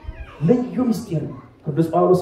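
A man's voice amplified through a handheld microphone, with drawn-out, sliding pitches in two phrases and a short pause between them.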